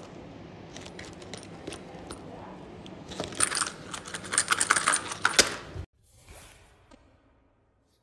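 Handling of a leather wallet on a granite countertop, with small hard items clattering and clinking against the stone for about two and a half seconds. The clatter stops abruptly a little before six seconds in.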